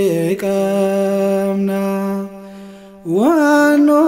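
A solo male voice sings an Afaan Oromo Ethiopian Orthodox hymn. He holds one long steady note for about two seconds, the sound dips briefly, and near the end a new phrase starts with an upward slide.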